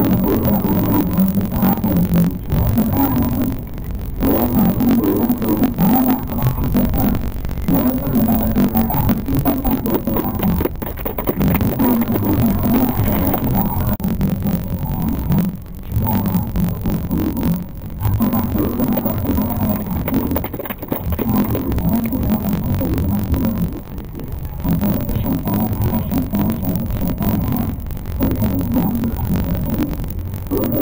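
A woman speaking Tamil into a handheld microphone, loud and continuous, with short pauses between phrases.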